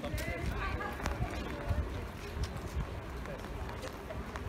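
Indistinct voices of people talking nearby over a low, uneven rumble.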